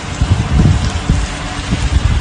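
Heavy rain falling in a steady hiss, with irregular low buffeting of wind on the microphone.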